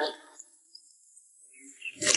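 Mostly quiet, with faint steady high-pitched chirring of crickets. The end of a spoken word is heard at the very start, and another sound begins just before the end.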